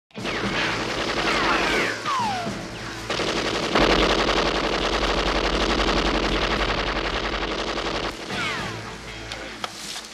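Belt-fed machine gun firing long, rapid bursts, loudest from about four to eight seconds in and then fading, with falling whistles shortly before and after the heaviest fire.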